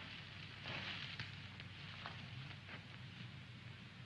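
Faint steady hiss with a few scattered light crackles, the surface noise of an early-1950s film soundtrack in a pause between lines.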